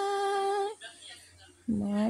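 A woman's voice holding one long, steady sung note of a worship song, which stops about three-quarters of a second in. After a short pause she starts a lower note near the end.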